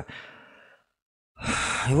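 A man's sharp, loud intake of breath through the mouth, about half a second long and coming after a moment of dead silence, just before he speaks again.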